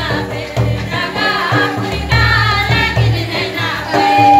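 A group of voices singing a folk dance song in chorus, with a hand-played barrel drum beating a steady low rhythm under the singing.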